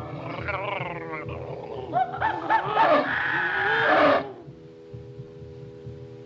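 Cartoon monster roars and cries, voiced with wavering and sliding pitch. They are loudest from about two to four seconds in and stop abruptly just after four seconds. Steady held notes sound underneath and carry on alone at the end.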